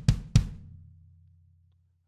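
Two hits on a sampled SoCal kick drum in Logic Pro X's Drum Kit Designer, about a quarter second apart. The second hit's low boom fades out over about a second and a half. The kick is tuned up a couple of semitones for a smaller, tighter kick.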